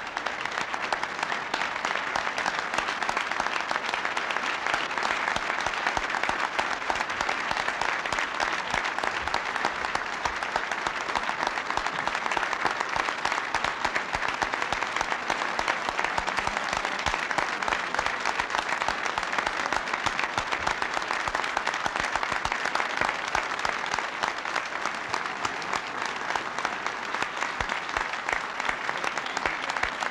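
Large audience applauding in a big hall: many hands clapping in a dense, steady clatter with no break.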